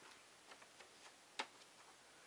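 Near silence with a few faint clicks as a picture book's page is turned and laid flat, the sharpest click about one and a half seconds in.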